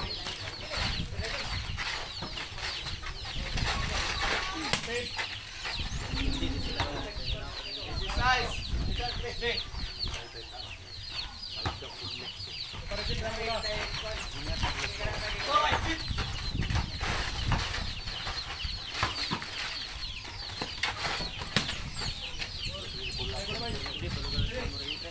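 Chickens clucking again and again, over a game of pick-up basketball: a ball thudding as it is dribbled on a dirt court, and players' occasional shouts.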